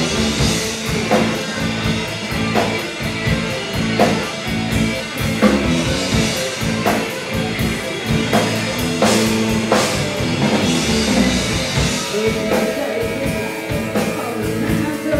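Live hard rock band playing: distorted electric guitars, bass guitar and a drum kit, with heavy drum accents about every second and a half. A woman's lead vocal comes in near the end.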